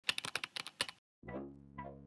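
A quick run of about ten computer keyboard keystrokes in the first second, stopping abruptly. After a brief silence, background music starts with steady low tones and a note about every half second.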